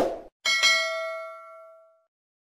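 Subscribe-button animation sound effect: a short click, then about half a second in a bright bell ding with several tones that rings on and fades away over about a second and a half.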